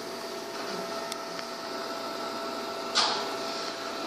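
Steady electrical hum of room equipment with a few faint high tones running through it, and a short rustle about three seconds in.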